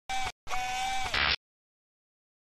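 Electronic logo sting: a brief synthetic tone, then a longer one that bends in pitch at its start and end, closing on a short hiss that cuts off suddenly about a second and a half in.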